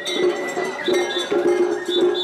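Japanese festival hayashi music played on a float: a small hand-held bronze gong (atarigane) struck repeatedly in a quick, uneven pattern, each stroke ringing briefly. A high steady note sounds over it during the first second.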